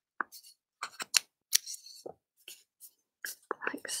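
Paper being handled and creased while folding origami: a scatter of short, dry crackles and clicks, more frequent near the end.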